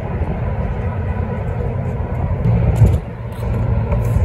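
Wind on the microphone: an uneven low rumble that swells a little more than halfway through, then briefly drops away.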